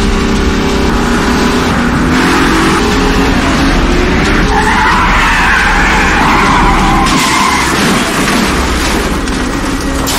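Car engines running hard in a chase, their pitch rising and falling, with a long tire squeal from about four and a half seconds in until about eight seconds.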